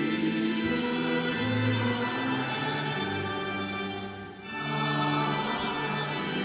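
Congregation singing a metrical psalm with church organ accompaniment, in long held notes, with a brief break between phrases about four seconds in.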